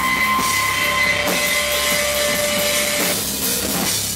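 Rock band playing live: electric guitar, bass and drum kit with cymbals. A few long held high notes ring over the drums, the last dropping out about three seconds in.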